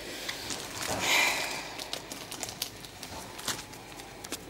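Hands handling a sealed foil trading-card booster pack: a brief crinkly rustle about a second in, then faint scattered clicks and taps.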